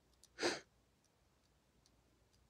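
A person's single short breath, about half a second in.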